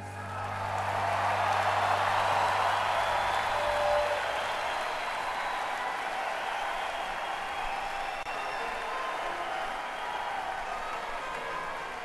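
Concert audience applauding and cheering as a song ends, swelling over the first couple of seconds and then holding steady. A low note held from the stage rings under it and fades out about four seconds in.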